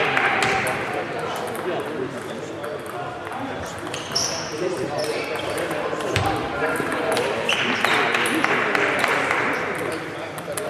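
Table tennis ball clicking off the bats and table in quick strokes during a rally in a large hall, over crowd chatter. The crowd noise swells near the end as the point finishes.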